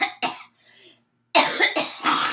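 A woman coughing: two short coughs at the start, then after a pause of nearly a second a louder bout of several coughs in quick succession.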